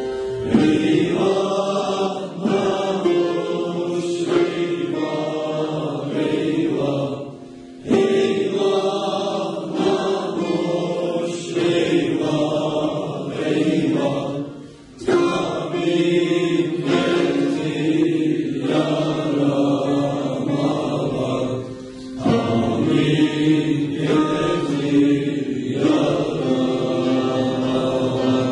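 A youth choir singing a Turkish folk song together, in long phrases with short breaks about a quarter, half and three quarters of the way through.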